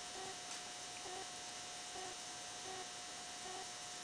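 Faint rhythmic rubbing of a cloth across a 10-inch Zildjian cymbal, about one wiping stroke a second, as solvent lifts old sticker glue off the metal. A steady faint hum runs underneath.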